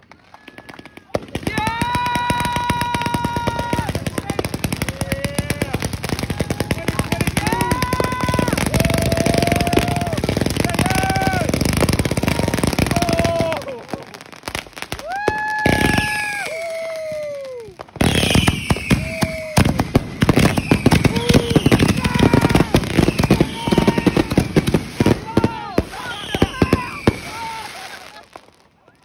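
Aerial fireworks crackling and popping in a dense, rapid rattle, with drawn-out high whoops and shouts over it. The crackle eases off briefly about halfway through, then comes back just as thick.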